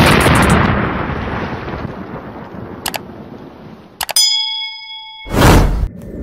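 Sound effects laid over an edit: an explosion sound effect, a sudden blast fading away over about two seconds. About four seconds in comes a couple of clicks and a ringing ding, then a short, loud burst near the end.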